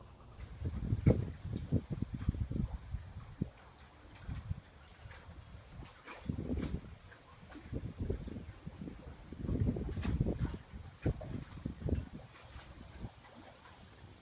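Wind buffeting and handling noise on a phone's microphone: irregular low rumbling gusts and soft thumps that swell about a second in, again around six seconds, and most strongly around ten seconds.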